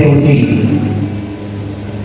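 A man's voice amplified through a PA loudspeaker trails off within the first second, leaving a pause filled with a steady low hum.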